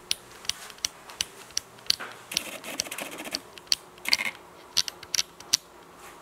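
A run of light, sharp mechanical clicks, about two to three a second and unevenly spaced.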